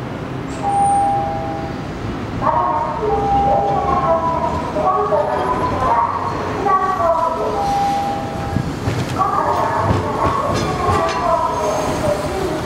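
Kagoshima City streetcar (the 2020 flower tram) running slowly toward the microphone over curved junction track and passing close by near the end.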